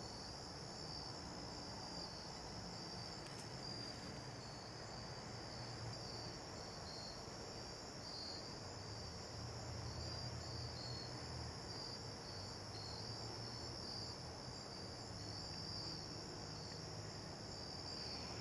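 Faint, steady chorus of crickets trilling, a high continuous pulsing song that does not change.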